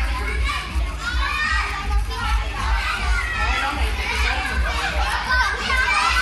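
Children playing and calling out, many young voices overlapping without a break, over a low steady hum.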